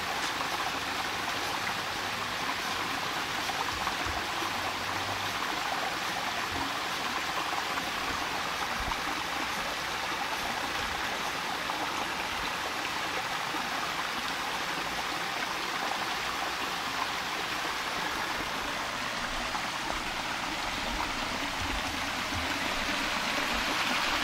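Creek water spilling down the stepped spillway of a small dam, a steady splashing rush of running water.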